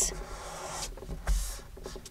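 Fingers pressing and rubbing along the folded edge of a cardstock envelope, the paper rustling and scraping softly, with a louder rub around the middle.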